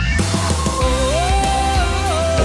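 Outro music kicks in suddenly: a loud track with a steady heavy bass and a sliding lead melody over it.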